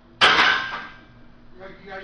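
A loaded steel barbell clanging once, loud and sudden, about a quarter second in, with a short metallic ring that dies away within a second.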